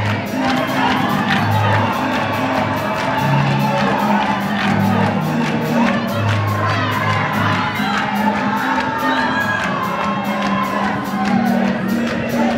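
Live gospel band playing, its bass moving through held low notes under an even beat, while a large crowd sings along and cheers.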